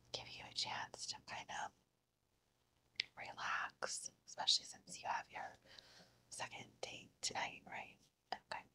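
A woman whispering softly, in whispered phrases with a pause of about a second near the two-second mark.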